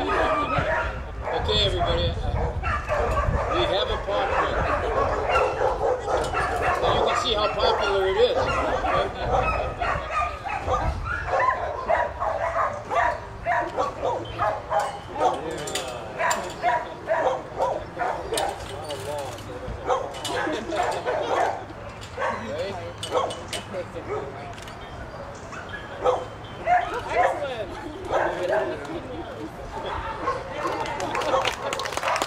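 A dog whining and yipping again and again over the murmur of people talking.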